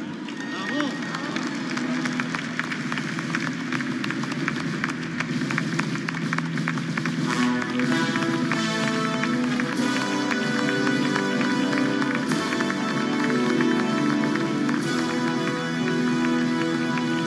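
Audience applauding, a dense patter of many hands clapping. About halfway through, music comes in with sustained chords and plays over the clapping.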